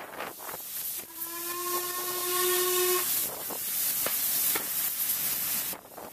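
Steam whistle of LMS Black 5 steam locomotive No. 45428, one steady blast of about two seconds starting about a second in. It is sounded for a whistle board as a warning to users of a footpath crossing. Wind and train running noise on the microphone underneath.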